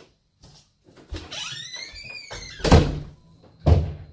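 An interior door swung shut. A drawn-out squeak rises and then falls in pitch, a loud slam comes about two-thirds of the way in, and a second heavy thump follows about a second later.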